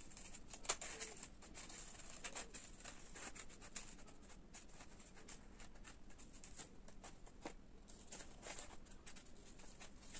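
Scissors cutting colour paper: faint, irregular small snips, several a second, with light paper rustling.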